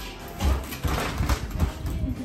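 Dog sniffing and pawing at a plastic pet carrier: quick noisy sniffs and several dull knocks against the plastic.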